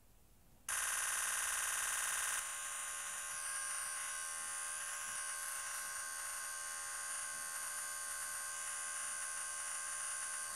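Nikon Z9 firing a continuous high-speed burst, its shutter sound repeating so fast, with the footage sped up fourfold, that it runs together into a steady buzz. The buzz starts just under a second in and eases slightly in level a couple of seconds later.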